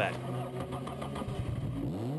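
Formula Ford single-seater race car engine running at a steady note. Near the end the pitch starts to climb as it picks up speed.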